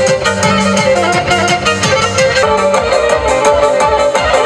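Fast Black Sea Turkish folk dance music for the horon: a bowed string melody over a quick, steady beat.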